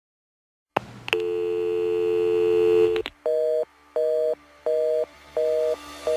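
After a short silence, a telephone line clicks open and a steady dial tone sounds for about two seconds, then cuts off with a click. A busy signal follows: four even on-off beeps.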